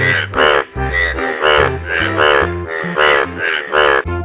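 A frog croaking in a fast run of short calls, about two a second, with background music underneath.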